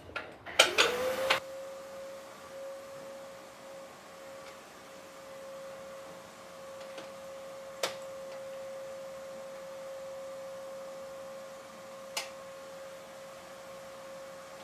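A brief loud rattling burst, then a small motor spinning up: a steady high hum that rises in pitch, settles and runs on evenly. Two sharp clicks break in, one about halfway through and one near the end.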